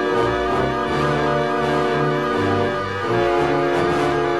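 Instrumental introduction of an acoustic folk song, played before any singing: held chords over a bass line that steps from note to note.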